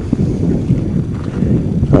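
Wind buffeting the microphone, a dense, uneven low noise, with footsteps on a gravel road beneath it.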